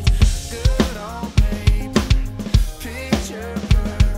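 Acoustic drum kit played along to an electronic pop backing track, with hard kick and snare hits and cymbals over a bass line and a gliding melodic lead.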